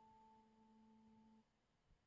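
Faint tail of one sustained note from a pedal steel guitar VST plugin, a steady pure-sounding tone that cuts off suddenly about one and a half seconds in, leaving near silence: one of the separate sampled notes an autosampler plays in turn.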